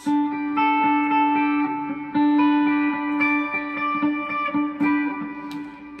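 Electric guitar playing ringing three-string triad shapes in G major, with a low note sustained beneath upper notes that change every half second or so. It dies away near the end.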